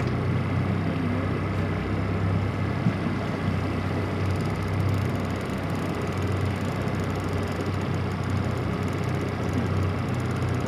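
Yamaha 8 hp kicker outboard running steadily at low speed, a constant low hum with the wash of water and wind around the boat.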